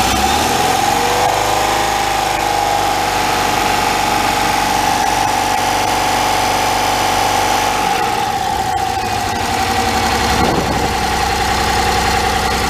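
Rover SD1's 3.5-litre Rover V8 idling with a rocker cover off, its valvegear exposed. The revs climb over the first couple of seconds, then hold steady. Oil is spilling from the rocker pedestals, a sign that the engine has oil pressure even though the gauge shows none.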